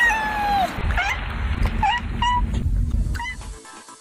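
A cat meowing. The first meow is long and falls in pitch, and it is followed by several short meows over the next few seconds.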